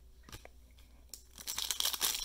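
Foil trading-card pack wrapper crinkling as it is picked up and begins to tear open, building up from about a second and a half in after a few light clicks of cards being handled.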